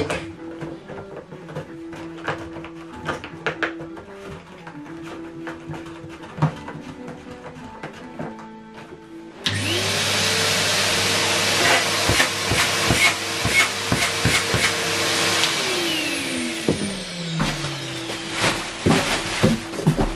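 Numatic International vacuum cleaner switched on about halfway through: the motor whines up to speed and runs with a steady rush of air for about six seconds. It is then switched off and winds down in a long falling whine. Background music and some handling clicks are heard before it starts.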